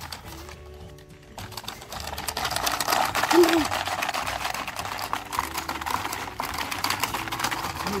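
Fast, continuous plastic clattering of a Hungry Hungry Hippos game as its hippo levers are pressed over and over, starting about a second and a half in, over background music.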